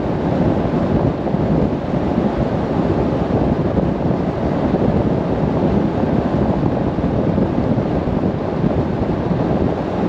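Steady wind rush buffeting the microphone of a camera mounted on the outside of a moving 1987 pickup truck, mixed with road and drivetrain noise at cruising speed.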